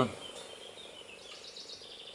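Faint high chirping from small wildlife, a quick run of short repeated notes, over quiet outdoor background.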